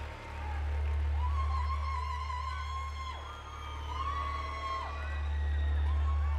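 Live band music: a deep, held bass note runs under high tones that slide up and down.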